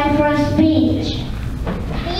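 A young child's voice speaking or singing a line, with long held notes in the first second.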